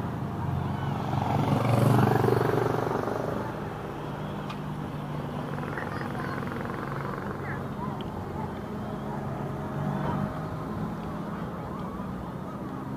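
A car drives slowly past close by, swelling to its loudest about two seconds in and fading, over a steady background of low traffic hum and people's voices.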